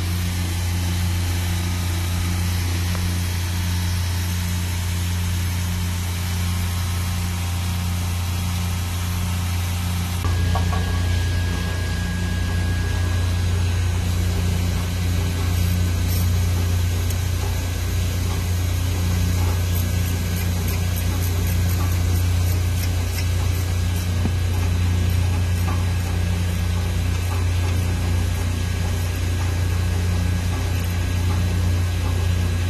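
Steady low machinery hum that steps up in level about a third of the way in, when a thin high whine joins it. A few faint light clicks come and go later on.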